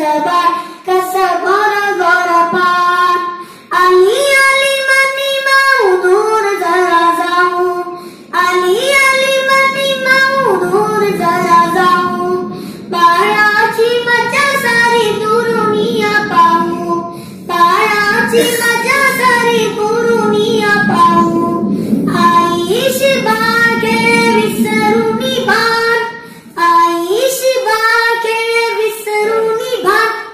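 A boy singing a song solo and unaccompanied, in held, stepwise melodic phrases of a few seconds each, with short breaks for breath between them.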